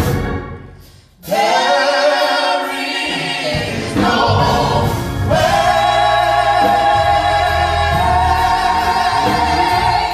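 A small group of voices singing a gospel hymn in harmony, holding long sustained notes. The sound dies away briefly at the start and the voices come back in about a second in, with a low organ accompaniment rejoining a few seconds later.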